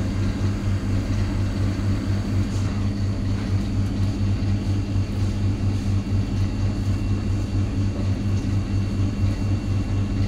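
A machine running with a steady, loud low hum.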